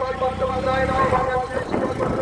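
A motor vehicle passing close by on the road, its engine rumble swelling and fading in the first second or so. Over it runs a steady, held pitched tone that breaks off near the end.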